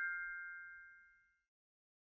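A bell-like ding from a channel logo sting, already struck. Its two clear ringing tones fade steadily and are gone about a second and a half in.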